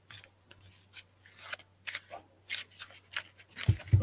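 A deck of tarot cards being handled and shuffled: a run of short, irregular papery snaps and rustles, several a second.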